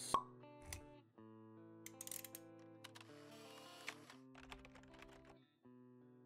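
Quiet intro jingle of soft, sustained synth notes, with a sharp pop right at the start and scattered light clicks and sparkly high flourishes.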